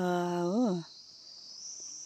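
Steady high-pitched chirring of insects in the vegetation. For the first second a voice draws out the end of a word, its pitch rising and falling before it stops.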